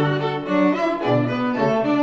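String quartet (two violins, viola and cello) playing. Bowed notes shift every half second or so over a held low cello line.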